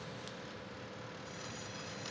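Low, steady background noise from the racetrack broadcast feed, with no distinct event standing out.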